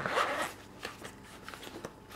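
Zipper of a small seam-sealed waterproof pouch being pulled open, a short rasp in the first half-second, followed by a few faint clicks of handling.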